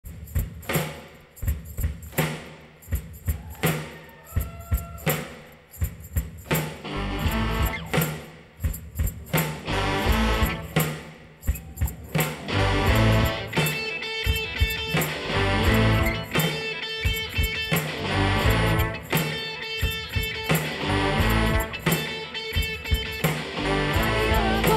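Live student rock band playing an instrumental intro. Sparse drum hits and a few notes open it, bass and guitars come in about a quarter of the way through, and the full band plays a steady rhythm from about halfway.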